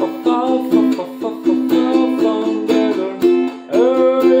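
Ukulele strummed in chords at a steady rhythm of about three to four strums a second, with a man singing along. His voice rises into a held note near the end.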